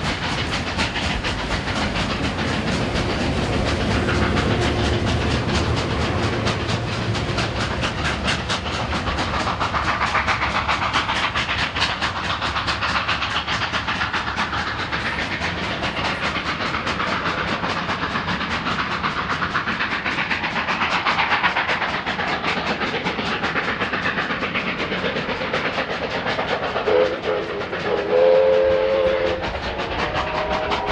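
Passenger trains running past on the rails, wheels clattering steadily over the track. Near the end a locomotive whistle sounds in two short blasts.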